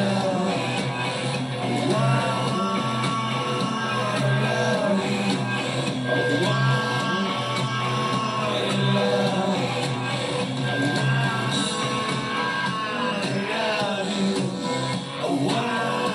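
Live rock band playing: bass, electric guitar and drums under a male lead singer's voice.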